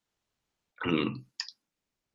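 Dead silence broken about a second in by a short vocal sound from a man, then a single brief click.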